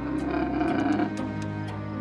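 A camel's throaty call, about a second long, near the start, over steady background music.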